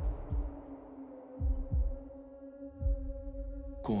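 Trailer sound design: slow low heartbeat-like thumps, a pair of them close together in the middle, under a held droning tone that thickens with higher overtones. It is cut off by a sharp hit with a falling sweep just before the end.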